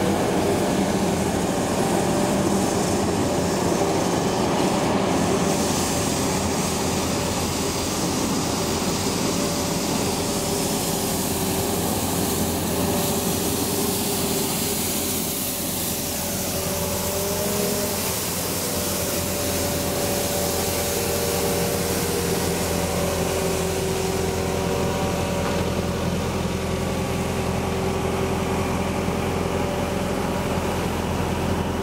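Compact street sweeper running, its engine humming steadily while its rotating side brushes scrub the paving stones. The brushing hiss swells in the middle as the machine passes close.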